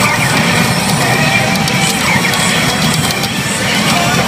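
Music and sound effects from a Hana no Keiji pachinko machine, playing loudly and steadily during an on-screen animation.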